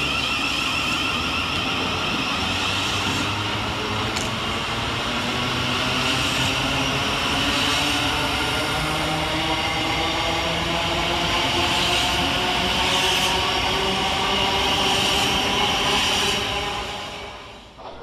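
Thameslink Class 700 electric multiple unit pulling away from the platform, its traction motors whining in several tones that slowly rise in pitch as it gathers speed. The sound fades out near the end.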